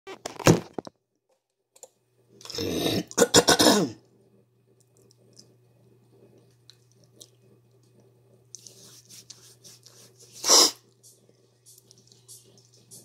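Phone microphone handled and rubbed while the camera is being set up: loud scraping bursts in the first four seconds. Then a steady low hum, and one short cough about ten and a half seconds in.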